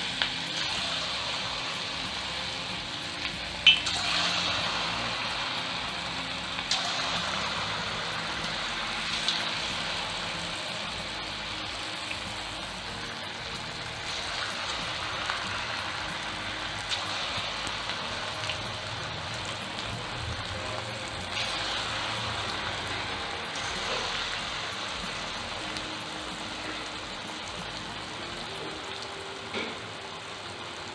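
Bonda batter balls deep-frying in hot oil: a steady sizzle and bubbling that slowly eases off, with a few light clicks and one sharp tap about four seconds in.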